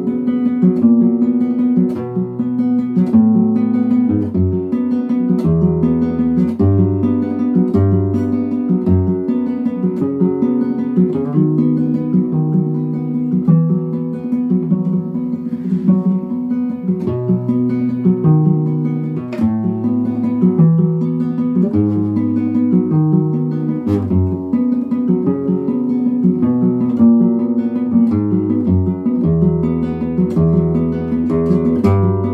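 Solo nylon-string classical guitar fingerpicked: a calm, flowing piece in B major, with bass notes changing about once a second under repeating higher plucked notes.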